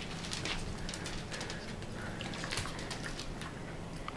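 Faint scattered clicks and taps, typical of dogs' claws on a vinyl kitchen floor as several dogs shift about, over a faint steady low hum.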